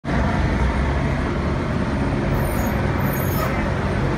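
Steady street traffic noise, a continuous low rumble of passing road vehicles.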